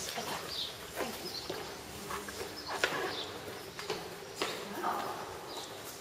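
Footsteps of several people going down stairs, irregular hard knocks, with faint voices murmuring.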